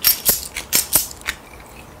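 About five sharp clicks and rattles of small hard objects handled on a tabletop, coming quickly over the first second and a half, then quieter.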